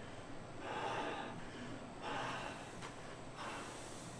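A man blowing breaths through a scuba BCD's oral inflator mouthpiece to inflate the bladder by mouth: three soft rushes of air, the first about half a second in, the last near the end.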